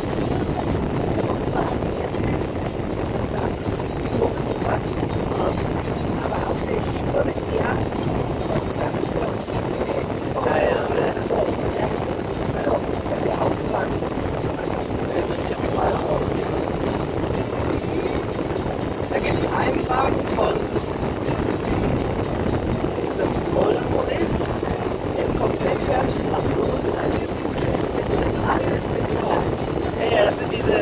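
Steady road and engine noise inside a moving car, with music and indistinct voices mixed in underneath.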